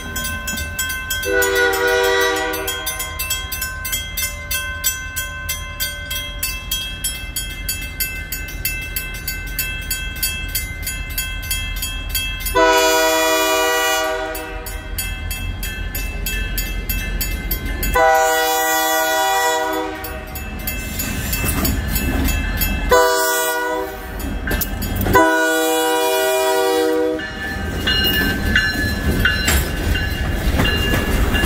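Railroad crossing bell ringing steadily while a North Shore Railroad freight locomotive approaches the crossing. The locomotive blows its multi-chime air horn in a short blast early on, then long, long, short, long, the standard grade-crossing signal. Near the end covered hopper cars roll past close by, their wheels clicking over the rail joints.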